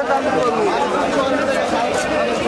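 Crowd chatter: many voices talking at once, with faint short scrapes of a knife scraping the scales off a large silver carp.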